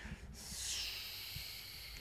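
A faint, breathy exhale, a soft hiss of breath lasting about a second and a half.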